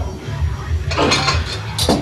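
Iron barbell plates clinking and rattling as a loaded bar is driven up out of a box squat, with a rushing noise about a second in and sharp clinks near the end, over steady background music with a low bass.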